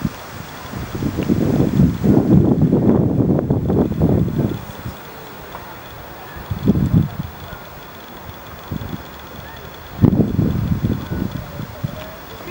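Wind buffeting the camera microphone in gusts: low rumbling bursts about a second in, briefly near the middle, and again about ten seconds in, over a steady outdoor hiss.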